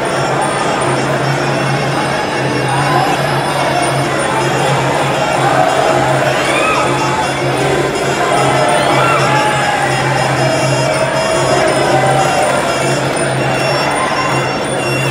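Traditional Muay Thai ring music playing steadily: a wavering reed-pipe melody over drums. A stadium crowd is shouting and cheering throughout.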